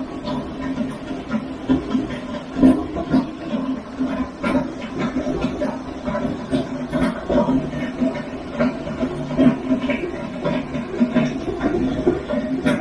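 Heavy downpour: a steady rush of rain with many irregular sharp drop hits close by.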